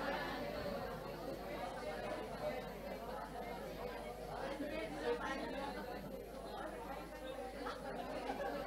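Many people in a congregation talking to one another at once, a low babble of overlapping voices with no single voice standing out, as they turn to their neighbours and tell them the Holy Spirit is upon them.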